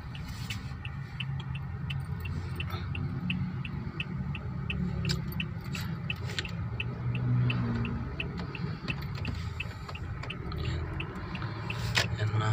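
A car's turn-signal indicator ticking steadily, about two to three ticks a second, over the low rumble of the engine and tyres heard from inside the cabin as the car turns off the road.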